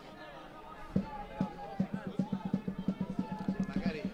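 A supporters' drum beating a fast, steady rhythm, about five beats a second from about halfway in, with faint chanting voices from the crowd over it.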